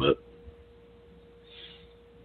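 A faint, steady single-pitched tone over low line hiss, with a brief soft breathy hiss about a second and a half in. The last of a spoken word is heard at the very start.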